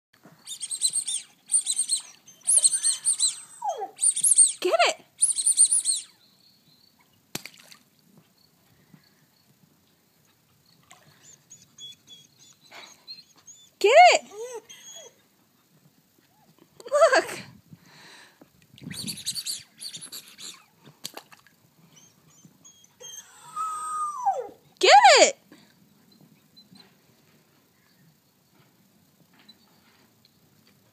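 Wolf-hybrid pup crying and whining in distress over his teddy bear out of reach: high-pitched cries in short bouts with pauses between, several sliding down in pitch.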